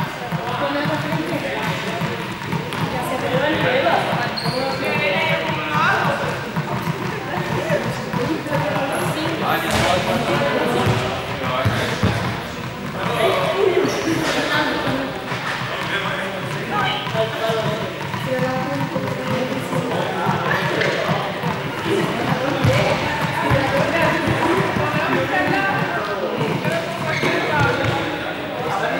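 Balls bouncing and dropping on a sports hall floor, with a chatter of voices that echoes around the large hall.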